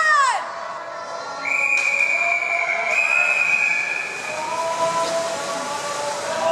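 Referee's long whistle blast, held steady for about two seconds. It is the signal for backstroke swimmers to get into the water before the start.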